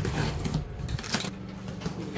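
Box cutter slitting packing tape on a cardboard shipping box: a few short scrapes and crackles of tape and cardboard, then the cardboard flaps being pulled open near the end.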